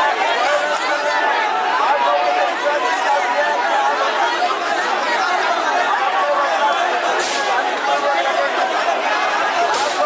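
Crowd of protesters, many voices talking over one another in a dense, steady babble, with no single voice standing out.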